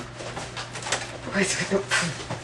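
A person's low, indistinct murmuring in a few short soft bits about one and a half seconds in, over a steady low hum.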